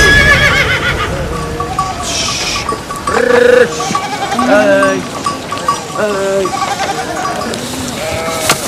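A flock of sheep bleating, one call after another a second or two apart, over a small bell clinking in a steady rhythm.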